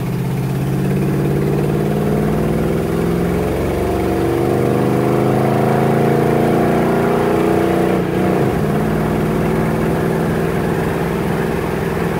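1969 Chevrolet Impala's engine heard from inside the cabin, pulling under acceleration with its pitch slowly rising, then dipping abruptly about eight seconds in and running on steadily.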